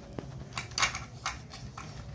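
Hard plastic of a Paw Patrol Rubble toy bulldozer clicking and clattering as it is handled, about six short clicks, the loudest a little under a second in.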